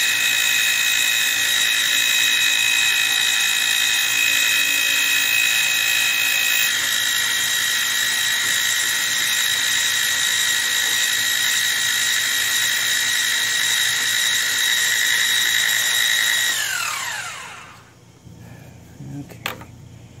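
Milling machine spindle running with a steady high whine as the cutter faces an air-compressor connecting rod's big end to shorten it. About 16 seconds in the motor is switched off and the whine falls away as the spindle winds down, followed by a few faint clicks.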